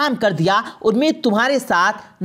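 Only speech: a narrator's voice telling a story in Hindi-Urdu.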